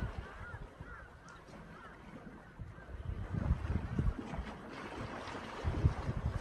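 Wind buffeting the microphone in low rumbling gusts, strongest about halfway through and again near the end, over a soft wash of sea water. A few faint bird calls come in the first second.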